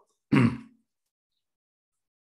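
A man clearing his throat once, briefly, about a third of a second in.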